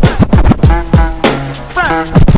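A DJ scratching a vinyl record on a turntable over a drum beat with steady low kick thumps. The scratched sound glides up and down in pitch in quick strokes.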